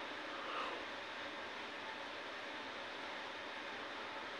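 Steady faint background hiss with no distinct events: room tone.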